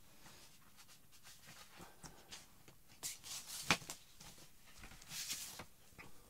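Faint handling noise of a vinyl LP and its cardboard sleeve: short sliding swishes and light knocks, with one sharp tap a little past halfway.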